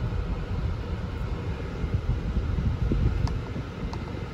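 Dodge Dart GT four-cylinder engine idling just after start-up, heard as a low, steady rumble from inside the cabin, with a faint click or two.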